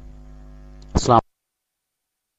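Steady electrical mains hum, then about a second in a brief, loud snatch of a voice that cuts off abruptly.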